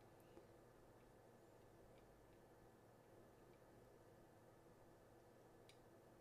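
Near silence: room tone with a faint steady hum and two faint clicks.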